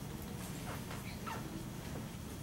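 Dry-erase marker squeaking on a whiteboard while writing, with a few short squeaky strokes about a second in, over a low steady room hum.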